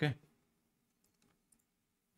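A spoken "okay", then three or four faint computer mouse clicks about a second in.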